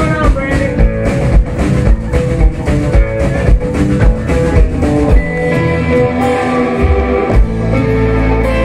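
Live rock band playing loud: electric guitars carrying a lead line over bass and drum kit. The steady drumbeat thins out about five seconds in, leaving guitars over long sustained bass notes.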